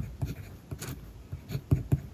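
Kaweco Special mechanical pencil writing Japanese characters on paper: a run of short lead strokes and taps, each with a soft thump through the paper, with a longer, scratchier stroke about a second in.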